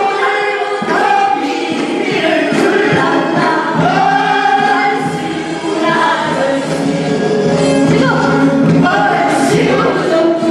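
A changgeuk ensemble of men and women singing together in chorus, a Korean folk-opera group song that carries on without a break.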